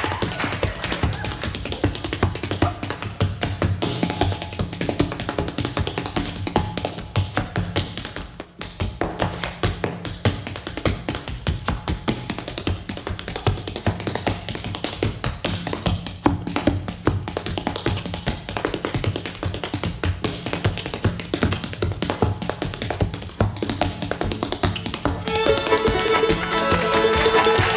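Solo percussive step dance: hard-soled shoes beating fast, intricate rhythms on a wooden stage floor, with a brief lull about eight seconds in.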